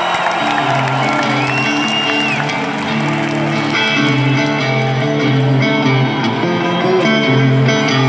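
Live rock band in an arena starting a song with electric guitar, sustained low notes changing every second or so, over crowd noise.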